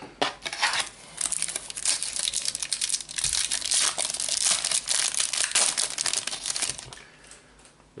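A Panini Adrenalyn XL Calciatori booster pack being crinkled and torn open by hand. The wrapper gives a dense, crackling rustle that builds about a second in and dies away near the end.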